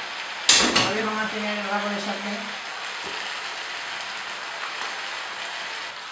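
Spaghetti sizzling in a non-stick frying pan of hot garlic oil, with a loud, brief clatter about half a second in as it is worked in the pan.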